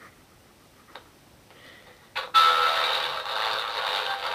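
A click, then about two seconds in the radio built into a plush pillow switches on and plays loudly through its small speaker, with a thin sound lacking bass and top.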